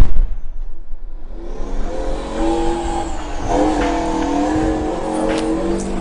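A loud blast right at the start, then a heavy armoured vehicle's engine running with a steady whine.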